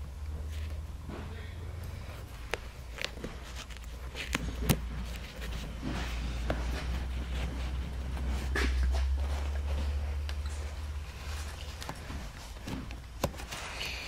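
Handling noise of a seat cover and foam being worked by hand as a wire tie is threaded through the seat back: soft rustling with scattered light clicks, the sharpest about halfway through, over a low steady hum.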